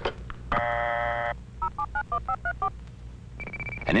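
Telephone call sounds: a click, then a short buzzy dial tone, then a quick run of about seven touch-tone (DTMF) dialing beeps. Near the end a steady high tone begins.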